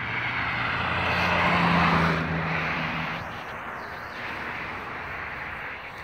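A car driving past on the road. Its tyre and engine noise swells to a peak about two seconds in, then fades away.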